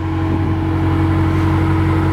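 5.7-litre Hemi V8 of an AEV Brute Jeep idling steadily: a low, even hum with a steady higher tone over it.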